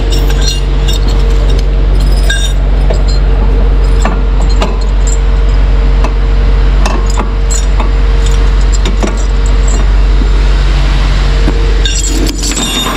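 Steel tow chains and hooks clinking and rattling against a tow truck's steel deck, in many short irregular clinks, over the steady low hum of an idling engine.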